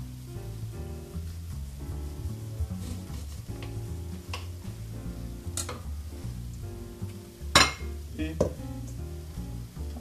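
Background music with a steady bass line, over which a kitchen knife knocks a few times on a granite countertop as limes are cut in half, the loudest knock about seven and a half seconds in.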